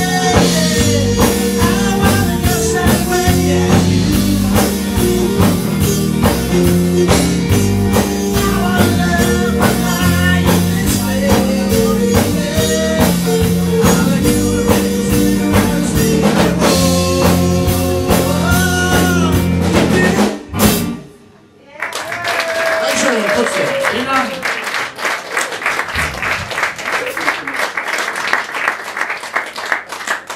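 Live band with electric guitar, drum kit, trumpet and a man singing plays the end of a song, stopping abruptly about two-thirds of the way through. After a brief pause the audience applauds.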